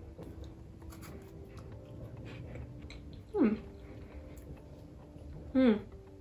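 Faint crunching and chewing of a dark chocolate digestive biscuit, with a short falling vocal sound about three and a half seconds in and a "hmm" near the end.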